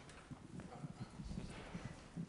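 Faint, scattered knocks and footfalls: a handheld microphone being carried and passed to a student along the seating rows, with light handling bumps.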